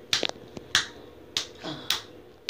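Four sharp snaps in an even rhythm, about 0.6 s apart, the first one doubled.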